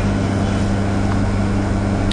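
A steady low mechanical hum over an even hiss, unchanging throughout.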